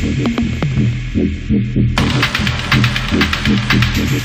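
Tech house music with a steady four-on-the-floor kick and bass pulse at about two beats a second. The hi-hats and other high percussion are cut out for the first half and slam back in abruptly about two seconds in.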